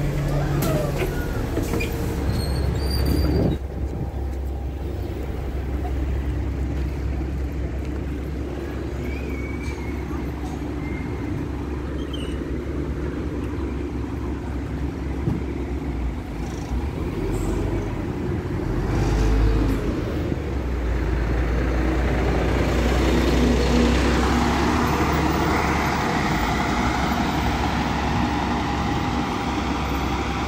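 Diesel engine of an Alexander Dennis Enviro500 double-decker bus running with a steady low drone, heard first from inside by the doors and then from the pavement. Over the last several seconds the engine and road noise grow louder as the bus pulls away from the stop.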